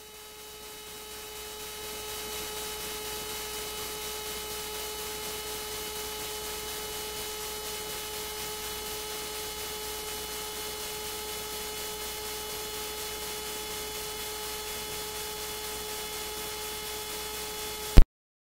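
Steady electrical hum with hiss from the sound system, fading up over the first two seconds and then holding unchanged.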